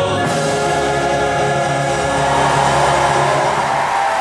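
Symphony orchestra and choir performing together, holding a long sustained chord.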